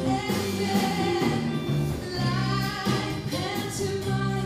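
A woman sings lead with a live pop band: bass guitar, drums with cymbals, saxophone and keyboard playing behind her.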